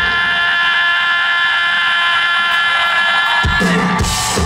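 Live rock band holding one sustained chord: steady high tones ring on with no bass or drums under them, and low sound comes back in about three and a half seconds in.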